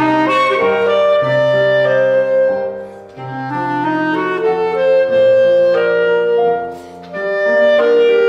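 Clarinet playing a classical solo over grand piano accompaniment, in phrases of held and moving notes, with two short breaks about three and seven seconds in.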